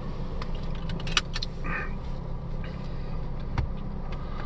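Steady low hum inside a car cabin, with a few small clicks and a brief handling sound as a plastic soda bottle is tipped up and drunk from.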